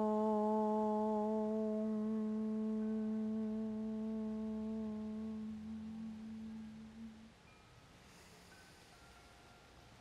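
A woman's voice chanting a long, steady "om", the first of three that seal the practice. It is held on one note, fades gradually and ends about seven seconds in.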